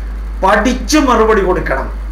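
A man speaking for about a second and a half between two short pauses, over a steady low hum.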